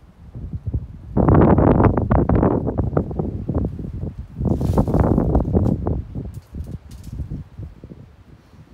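Two gusts of wind buffeting the microphone, the first about a second in and the second about halfway through, each lasting a second or two, with leaves rustling.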